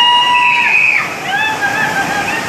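Muddy floodwater rushing in a steady roar. Over it come high-pitched, drawn-out cries, each held about a second and dropping at the end, one spanning the first second and another starting about a second and a half in.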